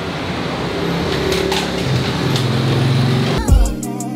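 Road traffic noise with a motor vehicle's engine running and rising in pitch as it speeds up. Background music with a beat cuts in near the end.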